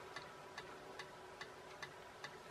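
Faint light ticks, a few a second and not quite evenly spaced, over quiet room tone with a faint steady hum.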